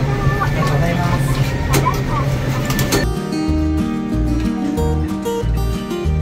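Restaurant room noise with indistinct voices for about three seconds, then a sudden switch to clean background music with a steady repeating bass line.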